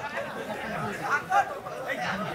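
Faint murmur of several people talking among themselves, low and indistinct, with a brief louder voice about a second and a half in.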